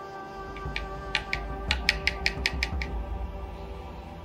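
A quick run of about ten light clicks over about two seconds, with a low handling rumble, as a wet water test strip is pulled from the jug and shaken to flick off the excess water. Background music plays throughout.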